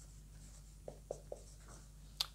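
Marker pen writing on a whiteboard, faint, with a few short strokes about a second in.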